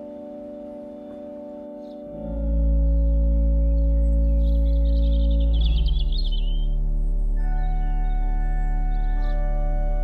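Bishop & Son pipe organ playing slow, sustained chords; about two seconds in a deep pedal bass enters and the music grows much louder, and the chord changes twice later on.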